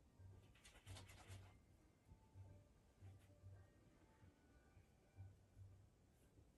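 Near silence, broken about half a second in by a faint scratchy stroke of a paintbrush dragging paint across canvas, lasting about a second.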